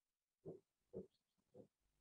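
Near silence, broken by three faint short sounds about half a second apart.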